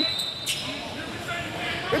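A referee's whistle holding one steady high note that stops about half a second in, then a sharp knock and a basketball bouncing on the gym's hardwood floor, with faint voices in the hall.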